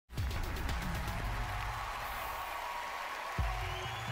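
Television show's opening theme music under a logo animation, starting abruptly with a heavy bass and a fresh bass hit near the end.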